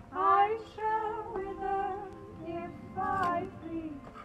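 A woman's high voice singing without words in a series of long held notes of wavering pitch, about five phrases with short breaks between them.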